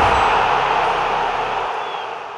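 Intro logo sound effect: a loud hiss of static-like noise that fades away slowly.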